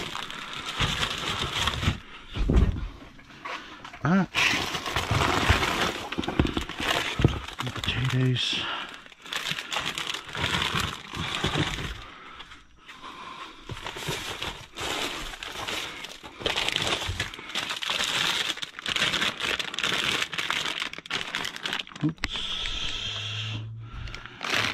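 Plastic bags and food packaging crinkling and rustling as they are handled, in irregular bursts throughout.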